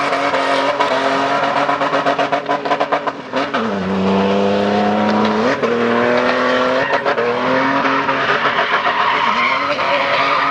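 A Toyota Land Cruiser's engine held at high revs as it drifts, with tyre squeal over it. About three and a half seconds in the revs fall sharply, hold lower for about two seconds, then climb back up.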